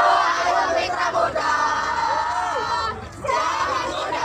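A team of voices chanting a yel-yel cheer together in unison, in long held shouted notes, with a brief break about three seconds in.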